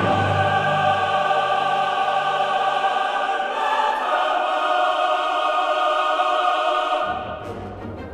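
Background music: a choir holding long sung chords, which breaks off about seven seconds in as quieter orchestral music takes over.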